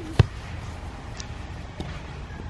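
A single sharp thud about a quarter of a second in: a child's bare foot kicking a soccer ball.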